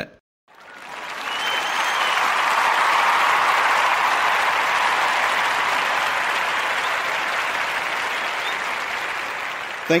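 Crowd applauding, swelling up over the first two seconds after a brief silence and then slowly dying away.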